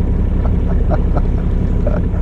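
Fishing boat's engine running with a steady low drone.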